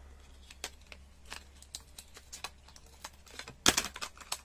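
A cardboard box of marker pens being worked open by hand: scattered small clicks and scrapes of the packaging, then a short, louder crackle near the end.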